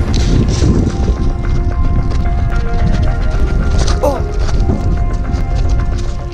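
Running footsteps on rocky mountain ground with a dense low rumble from a handheld camera carried on the run, over background music; a short shout of "oh" about four seconds in.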